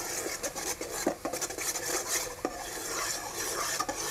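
A metal spoon stirring and scraping melting coconut sugar around a metal pot in irregular strokes, over a light sizzle from the bubbling sugar as it cooks towards caramel.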